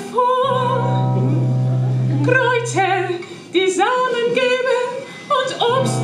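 A woman singing with vibrato over a steady low held note. The low note drops out about three seconds in and returns near the end.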